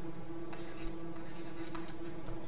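Pen strokes of handwriting on a tablet screen, a few faint short scratches and taps, over a steady low electrical hum.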